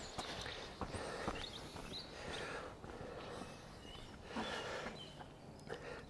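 Quiet outdoor ambience with a few soft footsteps on a stone path and wooden boards, and some faint high chirps.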